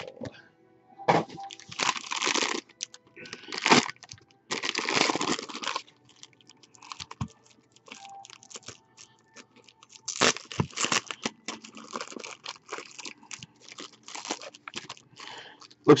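Foil wrapper of a trading-card pack being torn open and crinkled in several bursts during the first six seconds. From about ten seconds in, shorter rustles and clicks follow as the cards are taken out and handled.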